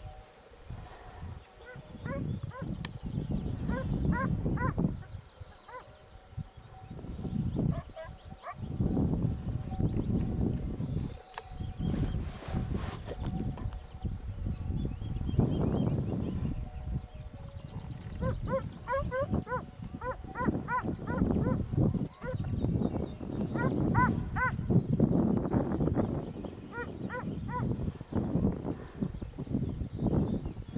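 Wind gusting on the microphone, with a steady high insect trill throughout and clusters of short high chirping notes, several times a second, in a few spells.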